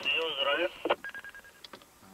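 Two-way radio: a voice comes through the handset's tinny, narrow speaker, then a short buzzing electronic tone about a second in as the transmission ends, followed by a few faint clicks.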